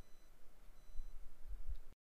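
Faint room tone of a voice-over recording: low rumble and hiss with two brief, faint high-pitched tones, then an abrupt cut to silence just before the end.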